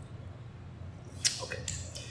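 A quiet stretch of room tone with a steady low hum, then a man briefly saying "OK" about a second in.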